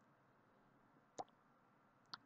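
Near silence: room tone, broken once about a second in by a single faint, very short click.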